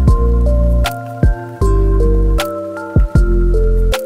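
Background music: held notes that change in steps, over a sharp percussive beat.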